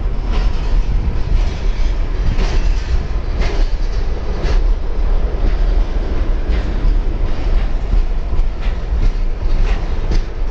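Freight cars rolling past at close range: a steady rumble of steel wheels on rail, broken by sharp clacks about once a second.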